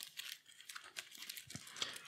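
Faint rustle and quick light clicks of a deck of game cards being shuffled by hand, the cards slipping against each other, with one slightly heavier tap about one and a half seconds in.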